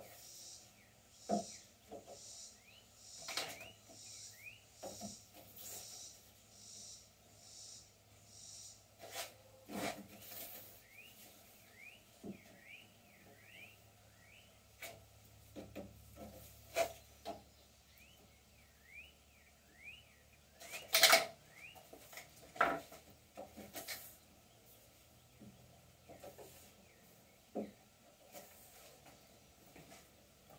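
Scattered clicks, knocks and scrapes of long white rods being slid through drilled holes in a wooden beam. The sound is faint throughout, with one louder knock about two-thirds of the way through.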